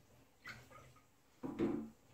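Two brief knocks of things being handled on a kitchen worktop: a light one about half a second in, then a louder, longer one near the end.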